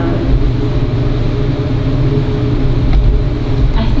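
Steady low rumble of background room noise.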